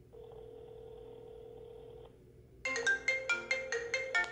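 A phone's ringback tone sounds steadily for about two seconds. Then, about two and a half seconds in, a marimba-like phone ringtone starts ringing in quick, bright notes.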